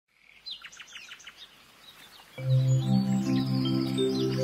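Birds chirping with quick falling calls, then about halfway through a low, steady drone of music comes in and holds under them.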